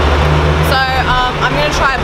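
A truck's engine idling with a steady low rumble, with voices over it.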